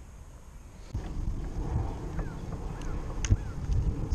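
Wind buffeting the microphone and paddle strokes in the water from a kayak being paddled, starting about a second in, with scattered clicks and a sharp knock near the end.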